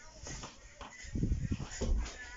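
Low rumbling thumps of handling noise on the camera's microphone as it is swung about, loudest in the second half.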